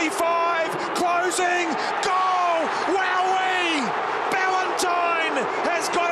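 A person's voice in short phrases, the pitch rising and falling, loud throughout.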